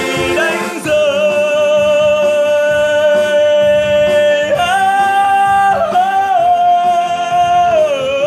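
Music from the song's wordless passage: a lead voice holds long notes with a slight vibrato over the backing. The line steps up to a higher note about halfway through, then falls back near the end.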